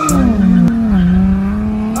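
Infiniti Q50's twin-turbo VR30 V6 held high in the revs during a drift, with tires skidding. The revs dip a little at the start, then hold steady.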